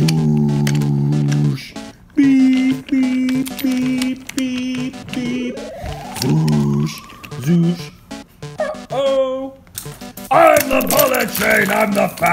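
Wooden toy trains clattering along wooden track. Over the clatter come a held tone, about five short beeps, and a long rising whistle, with a voice near the end.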